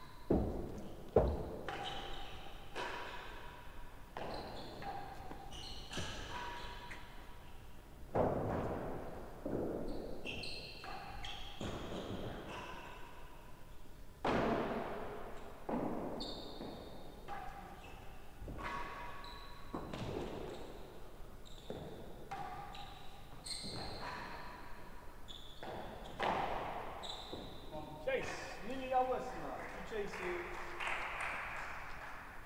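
A real tennis rally: the hard ball struck by wooden rackets and knocking off the walls, sloping penthouse roof and floor of the court, each knock ringing in the echoing hall. The knocks come irregularly, about one every one to two seconds.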